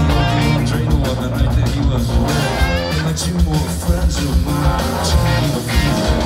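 Live rock band playing an instrumental stretch: electric guitars over a steady drumbeat and bass.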